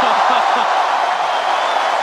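Large indoor arena crowd cheering and applauding steadily, with a few voices shouting over it in the first half-second.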